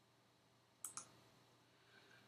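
Two quick computer mouse clicks close together, about a second in, against near silence.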